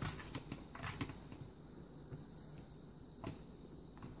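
Faint light ticks and rustles of chopped green pepper pieces being scattered and spread by hand over sausage in a skillet, with a few small clicks among them.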